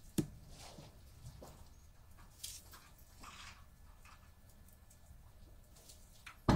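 Quiet room tone with a sharp click just after the start, then a few faint rustles and small knocks.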